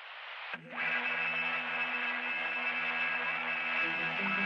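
Background music: a soft swelling hiss, then steady held synth chords that come in about half a second in.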